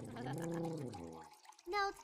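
A low voice humming one long wavering note that fades out about a second and a half in.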